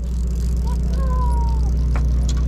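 Steady low drone of the sportfishing boat's engine running while the boat holds on the fishing spot.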